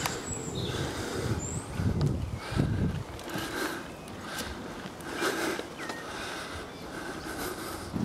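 Wind buffeting a handheld camera's microphone on a moving bicycle, an uneven low rumble that swells in gusts about two seconds in and again a little later.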